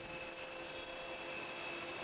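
Steady apron noise from turbine machinery running nearby: an even hiss with a few fixed whining tones that hold unchanged.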